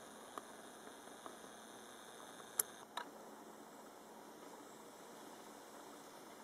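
Faint steady hiss with a few short, sharp clicks, the sharpest about two and a half seconds in and another just after.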